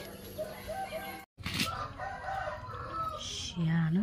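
A rooster crowing in the background, with a short burst of a person's voice near the end.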